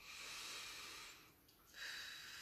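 A woman drawing in a long, soft breath through her nose as the slow in-breath of a golden thread breathing exercise. The breath fades out just past halfway, and another breath sound starts near the end.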